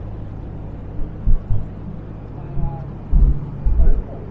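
Wind rumbling on the camera microphone, with a few low thumps of a hand handling the camera, the loudest cluster near the end, and a faint voice in the background.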